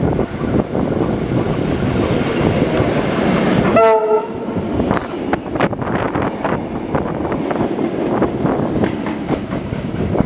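Tait 'Red Rattler' heritage electric train running close past: the rumble of the cars builds as it nears, and a short horn blast sounds about four seconds in. Then a run of irregular wheel clicks over the rail joints follows as the carriages go by.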